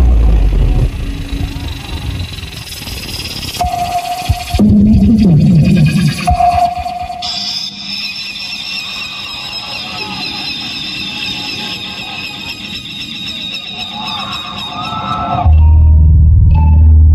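Live Adivasi timli band playing a horror-themed title piece, loud at first. It drops into a quieter, eerie passage of held high electronic tones, and the full band's heavy bass beat comes back in just before the end.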